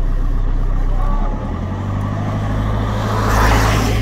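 A vehicle engine running steadily with a low hum that shifts slightly about a second and a half in. Near the end a loud rushing hiss swells up over it.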